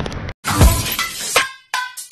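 Glass-shattering sound effect on an end card: a sudden crash with a deep falling boom about half a second in, followed by further crashing hits.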